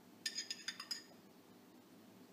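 Metal spoon clinking against the inside of a glass jar of tomato sauce as it is scooped: a quick run of about five light, ringing clinks in the first second.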